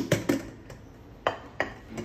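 Hands tapping the bottom of an upturned aluminium cake tin to release a cake that is stuck to it. About five short metallic knocks come at uneven intervals.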